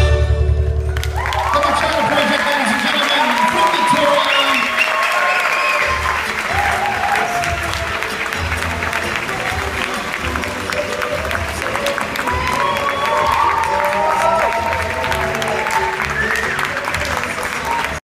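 Bachata music ends with a final hit about a second in, and an audience breaks into clapping with cheers and whoops. From about six seconds a steady bass beat plays on under the continuing applause.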